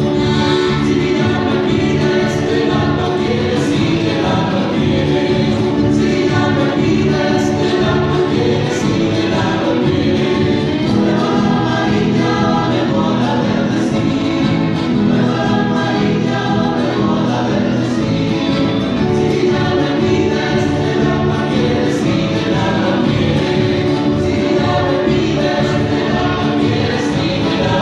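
Chilean folk dance music from Chiloé, with voices singing together over instruments, playing steadily and loudly throughout.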